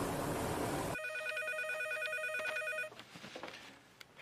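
Steady engine noise of a small propeller plane in flight. About a second in it cuts to a telephone ringing with a rapidly warbling electronic trill for about two seconds, and then the ringing stops.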